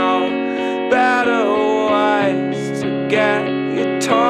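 Rock band music: strummed guitars under a melodic line whose notes glide up and down in pitch.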